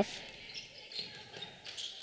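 Basketball dribbled on a hardwood gym floor, a few bounces about every half second over faint gym crowd noise.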